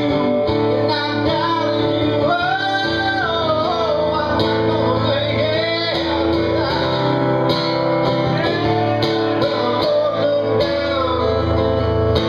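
A man singing with long, sliding held notes while strumming an acoustic guitar, in a live solo performance.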